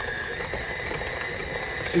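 KitchenAid tilt-head stand mixer running steadily, beating thick cream cheese icing in a stainless steel bowl, its motor giving a constant high whine.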